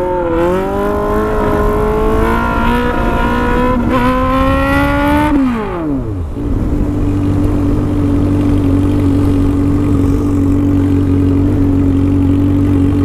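Honda Hornet's four-cylinder engine with a stainless aftermarket exhaust, pulling hard in gear with the revs climbing steadily for about five seconds. The revs then fall sharply and come back up to a steady high note that holds to the end.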